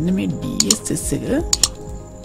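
A voice talking briefly, then two pairs of sharp clicks from computer keys or buttons being pressed, about halfway through and near the end.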